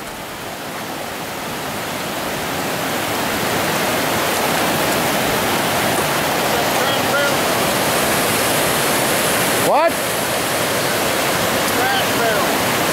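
River water rushing over rock shoals and ledges at an old dam: a steady rush of rapids and small falls that grows louder over the first few seconds.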